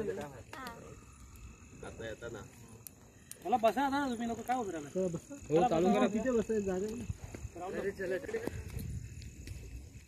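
People's voices, with a few stretches of drawn-out vocalising whose pitch wavers quickly up and down, about three and a half seconds in, again around six seconds and briefly near eight seconds.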